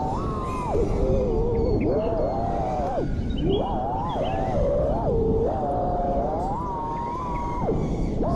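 An FPV quadcopter's Axis Flying Black Bird V3 1975kv brushless motors whine through fast flying, the pitch sliding up and down with the throttle, highest late on before a sharp drop near the end. A steady rush of wind noise runs beneath.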